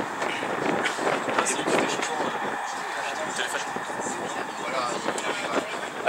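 Indistinct chatter of spectators over a steady outdoor background hiss, with a few small clicks.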